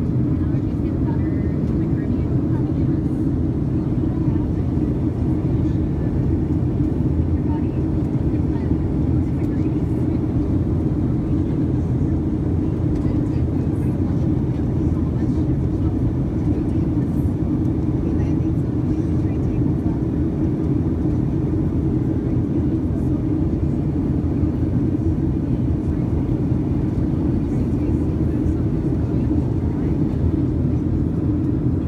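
Steady cabin noise inside a Boeing 737-800 on descent, heard from a window seat by the wing. Its CFM56 engines and the airflow over the fuselage make an even, deep rumble that does not change.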